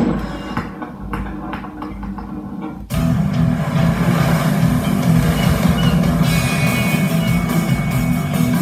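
Rock music with guitars playing from a television, heard through its speakers. It cuts in suddenly about three seconds in, after a quieter stretch with a few short clicks.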